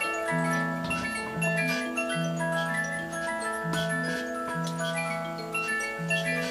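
Roullet & Decamps clockwork rabbit-in-cauliflower automaton (circa 1896) running: its musical movement plays a continuous tune of held notes, with the light ticking of the clockwork mechanism underneath.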